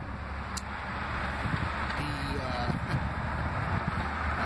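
Steady low rumble of outdoor background noise, such as wind on the microphone or distant traffic, with a few brief murmured voice sounds about two seconds in.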